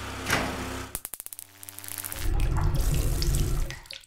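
Sound effects for an animated logo. A whoosh sweeps over the last notes of the background music. About a second in comes a fast run of about ten clicks, and then a loud, low, churning rumble that dies away abruptly near the end.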